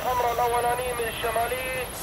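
A person's voice talking, quieter than the narration around it, with no blast heard. A faint, high-pitched steady whine joins about a quarter of the way in.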